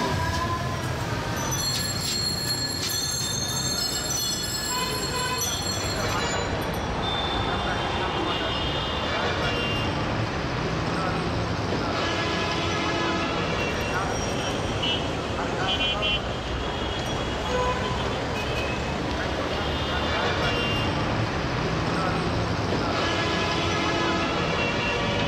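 Busy street noise of traffic and voices, with bicycle rickshaw bells ringing repeatedly in the first few seconds. After a cut, a steady city din continues with short horn-like toots and voices.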